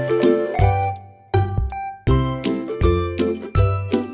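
Background music with a steady beat over a bass line, dropping out briefly about a second in.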